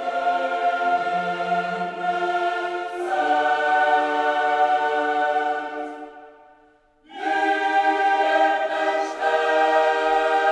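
Choral music with long held chords, changing to a new chord about three seconds in. It fades almost to silence around six to seven seconds, then comes back in on a fresh chord.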